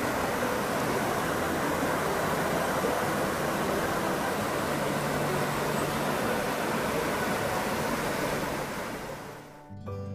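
River water rushing steadily over a shallow rocky bed, fading out just before the end.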